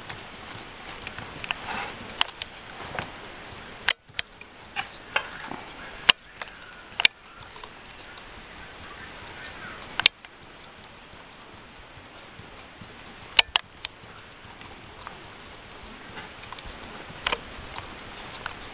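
Scattered small clicks and taps as the plastic wheels and wooden stick frame of a rubber band car are handled and turned by hand, winding the rubber band onto the axle, over a steady hiss.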